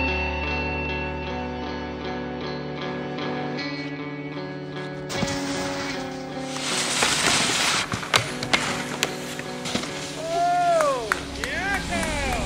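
Music with held notes; about five seconds in, a snowboard's edge scraping and hissing across snow comes in, followed by a run of sharp clacks. Near the end, a voice calls out with a rising-and-falling pitch.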